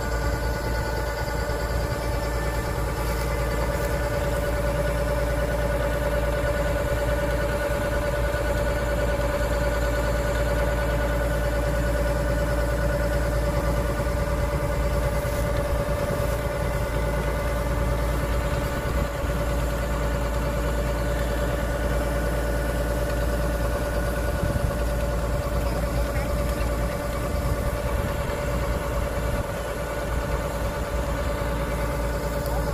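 Kubota DC-105X rice combine harvester's diesel engine running steadily while its unloading auger discharges grain into a truck. It is a constant drone with a steady hum above it and no change in pitch.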